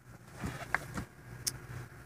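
Faint low hum of the truck idling, heard inside the sleeper cab, with a few light clicks and taps.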